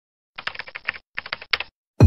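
Keyboard typing sound effect: two quick runs of key clicks with a short pause between them, the second run starting about a second in.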